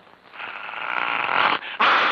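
A harsh cartoon animal growl on an old film soundtrack. It builds from about half a second in, breaks off briefly, and comes back louder near the end.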